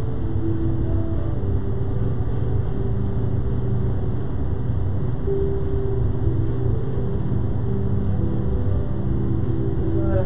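Slow background music of long held tones that change every second or so, over a steady low rumble.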